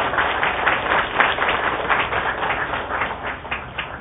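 An audience applauding, fading away near the end.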